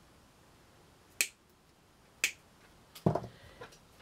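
Two sharp clicks about a second apart, from small hard craft items being handled on a work table, then a brief low handling sound about three seconds in.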